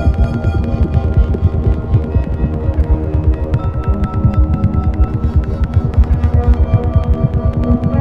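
Experimental electronic music from synthesizers driven by biosonic MIDI, which translates a fetus's movements in the womb into notes. Held synth drones sit over a dense, fast, uneven throbbing pulse in the bass, and a new high held note comes in about halfway through.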